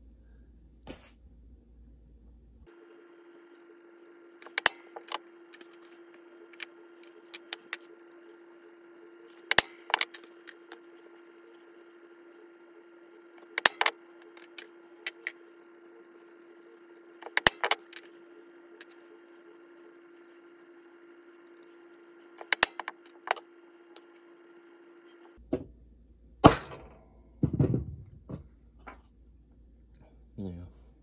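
Steel letter stamps struck with a hammer into a flat silver ring blank on a steel bench block: sharp metallic taps, singly or in pairs, spaced several seconds apart, the loudest near the end, with clinking of the steel punches between strikes. A faint steady hum runs under most of it.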